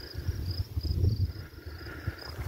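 An insect chirping high and fast, short chirps about three a second, over a loud uneven low rumble of wind buffeting the microphone.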